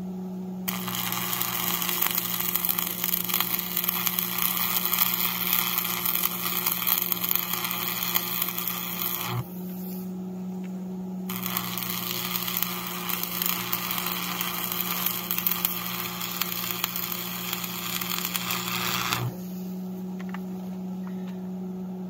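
Stick arc welding with a Lincoln AC-225 transformer welder, laying a bead on a steel plow bracket. The arc crackles for about nine seconds, stops briefly, then crackles again for about eight more, over a steady hum.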